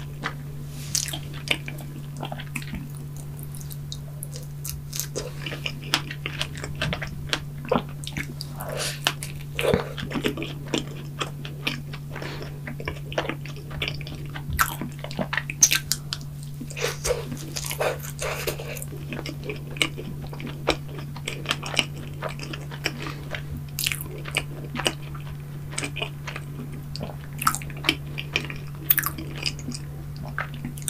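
Close-miked biting and chewing of a strawberry-topped chocolate doughnut: irregular short wet mouth clicks and smacks throughout. A steady low hum runs underneath.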